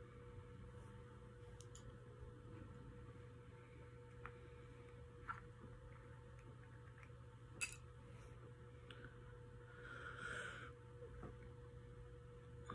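Near silence: quiet room tone with a steady low hum, a few faint clicks, and a brief soft rustle about ten seconds in.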